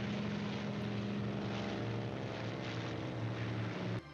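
Steady drone of a twin-engine propeller airplane flying overhead, heard on an old film's soundtrack. It stops abruptly at the end.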